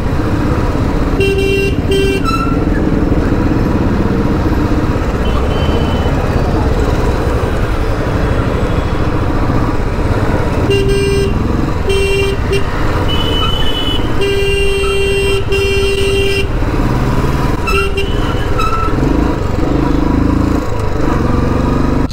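Royal Enfield Standard 350's single-cylinder engine running steadily under way in traffic, with vehicle horns honking in short blasts: twice about a second in, then a run of honks later on, the longest held for about a second.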